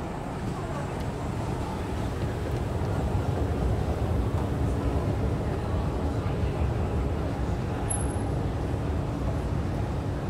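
Escalator running while being ridden down, a steady low rumble, with faint chatter of people in the station hall.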